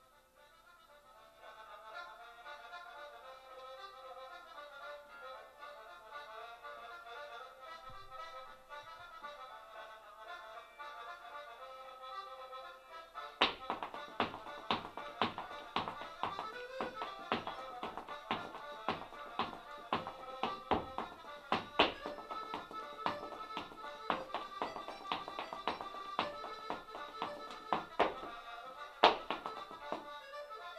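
Recorded Irish traditional dance tune with accordion starts about a second and a half in. About halfway through, an Irish dancer's shoes join in with a fast run of sharp taps and clicks in time with the music, with one especially loud strike near the end.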